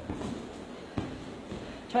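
Judoka shuffling and stepping on a judo mat as the thrown partner gets back up, with a short soft thud about a second in.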